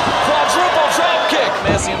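Voices shouting over pro wrestling action in the ring, with a few sharp smacks of bodies on the ring mat.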